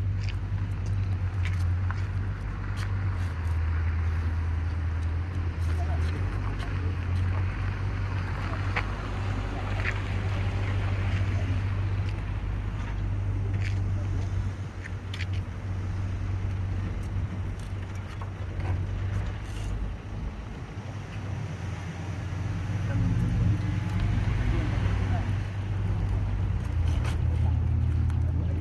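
Steady low rumble of outdoor background noise, with faint voices now and then.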